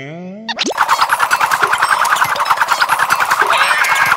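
Cartoon sound effects: a quick upward-sliding pitched sound, then from just under a second in a rapid, even warbling trill of about ten pulses a second that runs on steadily.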